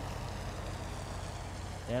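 Steady low background hum and hiss with no distinct sounds, between stretches of a man's commentary; the voice starts again right at the end.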